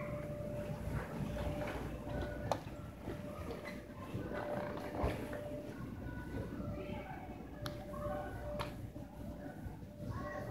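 Arcade game machines beeping and playing electronic tones over a steady low din of background voices, with a steady tone that comes and goes and a few sharp clicks.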